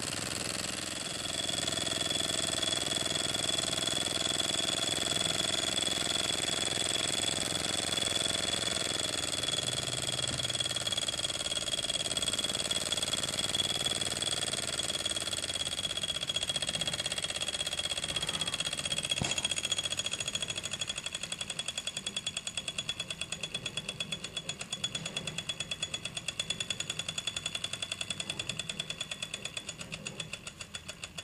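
Microcosm M88 miniature walking-beam steam engine running fast: quick, even chuffing and clatter of its piston, valve and beam linkage, with a thin steady high tone. From about two-thirds of the way through it grows quieter and the strokes slow until each is heard on its own, the engine running down toward a stop at the end of its run.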